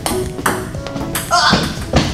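Table tennis ball struck back and forth, a few sharp ticks of the ball on paddle and table, over background music, with a voice briefly about three quarters through.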